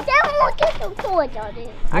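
People talking, a young child's voice among them.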